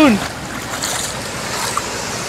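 Shallow sea surf washing steadily over sand, with feet splashing through the water and wind buffeting the microphone.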